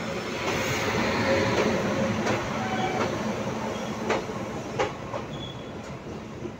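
An Indian Railways electric locomotive and its express train coaches rolling past close by. The loud, steady rumble of wheels on rails swells over the first couple of seconds, then slowly eases off, with sharp wheel clacks every half-second to a second.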